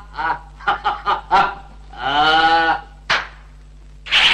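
A man's voice in a film soundtrack: a string of short, snicker-like vocal bursts, then one long drawn-out cry about two seconds in, and a brief sharp sound a second later.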